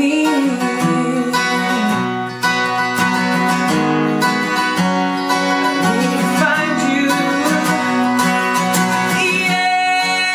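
Takamine cutaway acoustic guitar played with the fingers, a steady run of plucked notes and chords. A man's voice sings along at times, briefly near the start and again past the middle.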